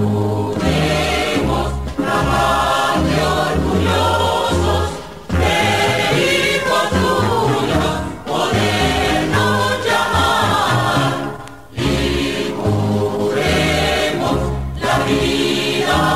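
Music from a radio broadcast: a choir singing over instrumental backing with a steady bass line, dipping briefly between phrases.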